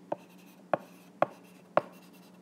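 Stylus writing on an iPad's glass screen: four sharp taps, about half a second apart, as the tip strikes the glass between strokes.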